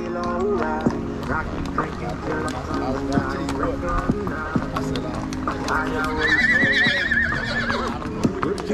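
Horses' hooves clopping on a paved road, with a horse whinnying in a high, wavering call about six seconds in, over music and voices.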